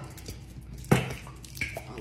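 Thick caramel sauce squeezed from a large squeeze bottle into a plastic cup, faintly squelching, and a man's voice saying a short word about a second in.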